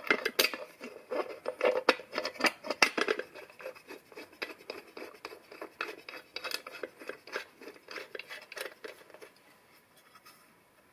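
Cast aluminium cover and small metal fittings clinking, knocking and scraping against a machined metal ring as they are handled and positioned by hand. Louder knocks come in the first three seconds, then lighter ticks and clicks.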